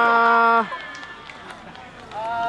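A spectator's long drawn-out cry held on one steady pitch, cutting off about two-thirds of a second in, a reaction to the batter's strikeout; after it only quiet ballpark background.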